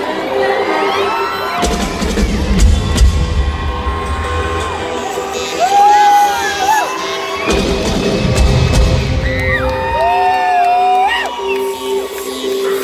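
Live rock band playing, with a steady held keyboard tone and two heavy swells of bass and drums. A crowd cheers and screams close to the microphone over it, with shrill whoops about halfway through and again near the end.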